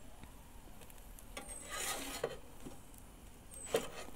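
Metal pizza turning peel scraping briefly across the oven's baking stone as it slides under the pizza, about halfway through, with a couple of light clicks.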